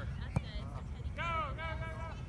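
A high-pitched voice calls out twice in quick succession about a second in, over a steady low rumble of wind on the microphone. A single sharp click comes shortly before the calls.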